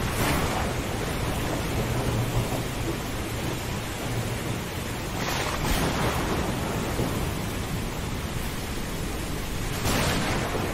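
Storm ambience over the sea: a steady rush of wind, rain and surf, swelling briefly about five seconds in, with a low rumble of thunder a couple of seconds in.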